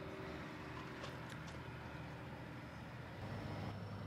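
Pilatus PC-6 Porter's engine and propeller idling on the ground, a steady low drone that gets louder a little after three seconds in.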